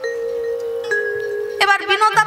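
Musical accompaniment holding a steady chord of sustained tones, one note dropping out and a higher note coming in about halfway. A voice comes back in near the end.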